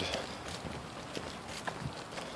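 Faint footsteps of a person walking, a few soft taps over a low outdoor background hiss.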